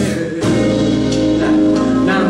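Live band playing a slow pop-gospel song: electric guitar, keyboard, bass guitar and drum kit together, with a brief dip in loudness shortly after the start.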